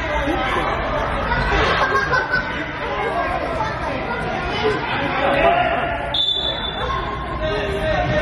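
Voices of players and spectators shouting and chattering, echoing in a large sports hall, with a brief high-pitched tone about six seconds in.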